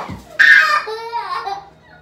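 A toddler crying: a loud high wail about half a second in, trailing off into quieter sobbing cries.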